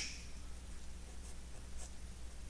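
A marker pen writing on paper: a few faint, short strokes over a steady low hum.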